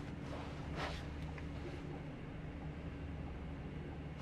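Scania K410IB double-decker bus running at low speed, heard from inside the upper deck as a steady low drone with a faint steady tone above it. A brief hiss rises about a second in.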